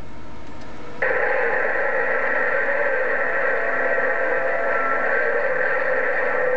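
President HR2510 radio's speaker giving a steady hiss of received static that comes on suddenly about a second in, with faint steady whistles in it.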